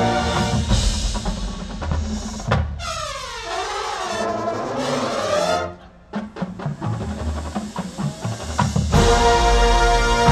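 Drum and bugle corps brass and percussion playing: held brass chords, a sharp hit about two and a half seconds in, then a few seconds of pitch sweeps falling and rising that cut off suddenly. Scattered drum hits follow, and a loud full brass chord comes in near the end.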